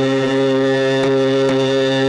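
Carnatic classical music in raga Ganamurti: one note held steadily over the drone, with faint light strokes about one and one and a half seconds in.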